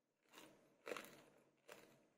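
Faint crunching of a person chewing crisp, unripe mamuang bao mango sprinkled with granulated sugar, three crunches within two seconds.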